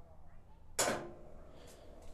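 A single short clack a little under a second in, over a low steady hum, as a wheel balancer finishes a check spin and its readout comes up.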